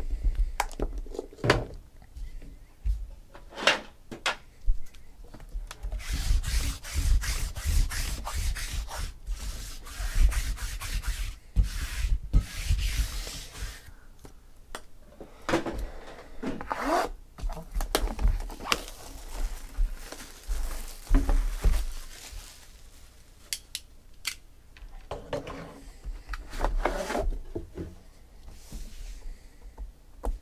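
Hands unwrapping a sealed trading-card box: a long run of fine crackling as the plastic shrink-wrap is torn and crumpled, then rubbing and scraping of cardboard, with a few short squeaks, as the box is slid off its contents.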